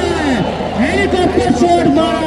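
A man's voice giving live cricket commentary in Hindi, talking continuously.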